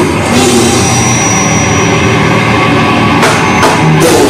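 A live heavy metal band playing loud and steady: distorted electric guitar with a drum kit pounding under it.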